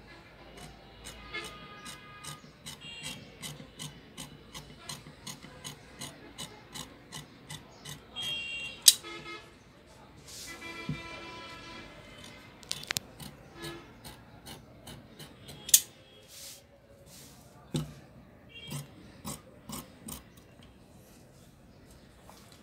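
Tailor's scissors cutting cotton fabric: a steady run of snips, about two to three a second, for the first half, then slower, irregular snips with a few sharper clicks.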